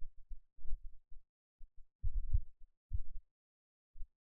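Irregular clusters of soft, muffled low thumps, with nothing high-pitched in them.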